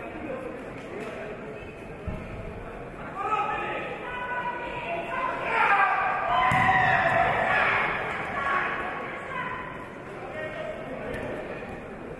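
People shouting in a large, echoing sports hall, loudest from about three to eight seconds in, with a single thud about two seconds in.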